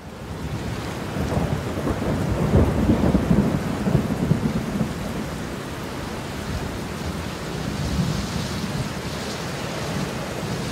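Thunderstorm: a long rolling rumble of thunder swells over the first few seconds and dies away, over steady heavy rain that goes on throughout.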